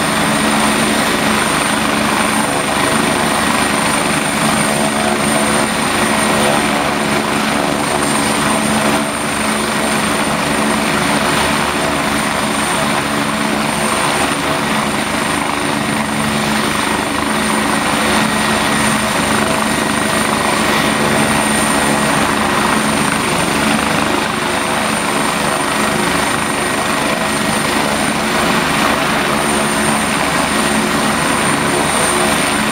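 Eurocopter EC145 helicopter running on the ground before lift-off. The rotor beats steadily under a constant high turbine whine from its twin turboshaft engines.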